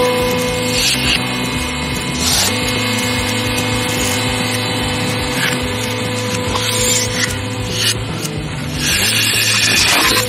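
A hydraulic press runs with a steady hum as its ram crushes a can of Silly String. Several short crackles and crunches come through it as the can and its contents give way.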